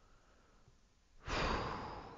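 A man sighs heavily into the microphone: a breathy exhale starting a little over a second in and fading out.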